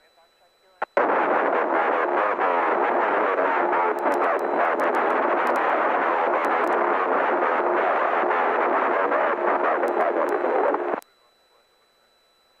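Aircraft VHF communication radio receiving several stations transmitting at once on the same frequency: a garbled jumble of overlapping voices with crackle, a real mess. It cuts in abruptly about a second in and cuts off about a second before the end.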